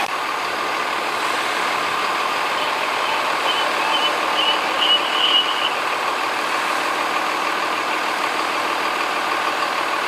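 Fire engine's diesel engine running steadily at the pump panel while pumping water to the hose lines. A few short high beeps sound in the middle.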